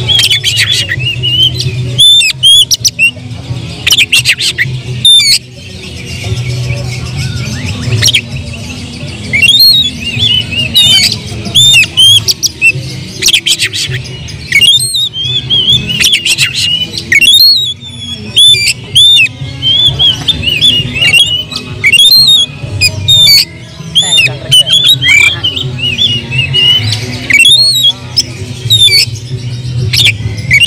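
Oriental magpie-robin singing continuously: loud, rapid phrases of varied whistled notes, rising and falling, mixed with harsh clicking notes in the first few seconds. It is an excited, territorial song, the bird in fighting mood.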